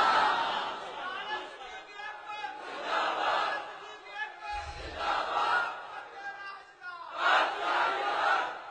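A crowd of listeners shouting together, in about four swells that rise and fade.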